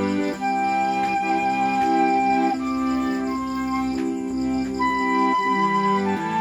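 Pearl River piano accordion playing sustained chords, with a bamboo transverse flute playing a slow melody of long held notes above it.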